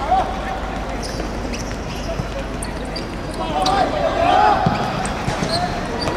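Footballers calling out to each other during play, a brief shout at the start and a longer call from about three and a half to five seconds in. Dull thuds of the football being kicked come about two seconds in and again near the end of the call.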